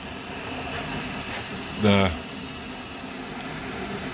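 Flashforge 3D printer running near the end of a print: a steady whir from its fans and motors at an even level.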